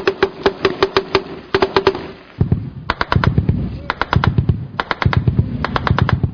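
Bursts of automatic rifle fire, several sharp shots a second, in a fast run for the first two seconds and then in short bursts. From about two and a half seconds in, a low rumble runs under the shots.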